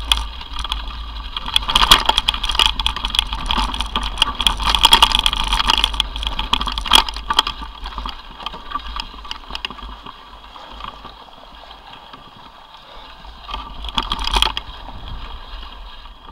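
Mountain bike riding over a rough gravel and grass trail, picked up by a camera on the bike or rider: a continuous rattle of clicks and knocks from the bike and mount over a steady low rumble. It is loudest over the first half, eases off in the middle and picks up again near the end.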